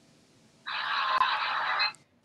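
A burst of hiss lasting a little over a second, starting under a second in and cutting off suddenly.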